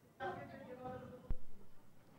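A voice speaking briefly, with a single sharp click just past the middle that is the loudest sound.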